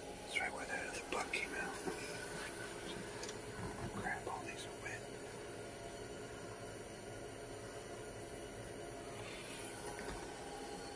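Faint whispering in the first few seconds, then quiet room tone.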